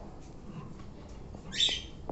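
Sun conure giving one short, harsh squawk about one and a half seconds in.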